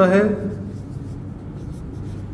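Marker pen writing on a whiteboard: a few faint short strokes as a numeral and letter are drawn.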